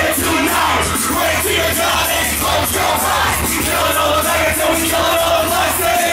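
Loud live hip-hop beat with heavy, steady bass playing through a club PA, with a crowd shouting and yelling over it between rapped verses.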